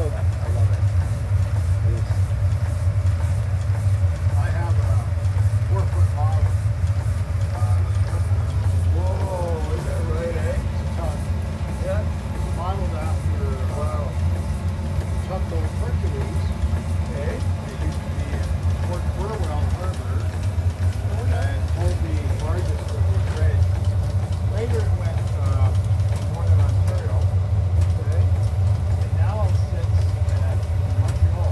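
Steady low rumble of a steamboat's engine-room machinery as its compound steam engine is warmed up, with people talking indistinctly in the background.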